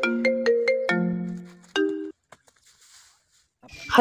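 Mobile phone ringtone: a quick, marimba-like melody of bright notes, stopping about two seconds in.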